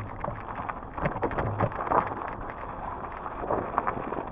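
Mountain bike riding fast over loose dirt and gravel singletrack: continuous tyre noise with frequent irregular clattering knocks and rattles from the bike over the stones, and wind buffeting the microphone.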